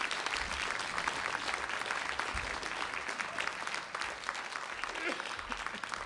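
A large theatre audience applauding, with dense, steady clapping that thins out near the end.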